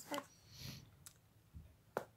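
Faint clicks and light rustling of cardboard puzzle cards being handled and pushed together on a woven table mat, with a sharper click near the end as pieces snap into place.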